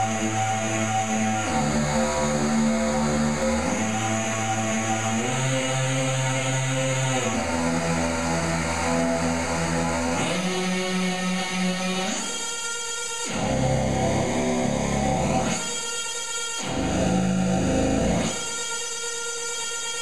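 Glitchy electronic tones from an Arduino Due running a sine-wave-table synth sketch with a coding mistake. The buzzy, distorted drone jumps from one pitch to another every second or two. In the second half it breaks three times into a harsher, brighter buzz.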